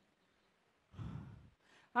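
A man's breath on a close headset microphone: one short breathy exhale, like a sigh, about a second in, after a moment of near silence.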